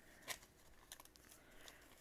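Faint, brief rustles of paper banknotes being handled and sorted by hand, the clearest about a third of a second in, against near silence.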